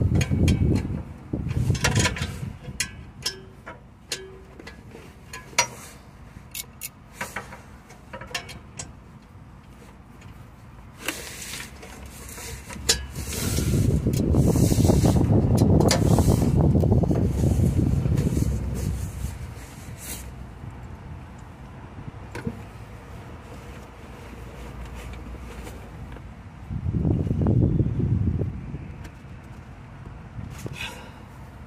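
Metal clicks and knocks of a ratchet and socket being worked on a tight, seized diesel vaporizer. Partway through, a loud low rumble swells and fades over several seconds, and a shorter one follows near the end.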